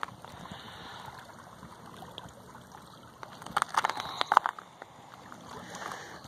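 Small lake waves lapping against a rocky shoreline: a low, steady wash, then a quick run of slaps and splashes about three and a half seconds in.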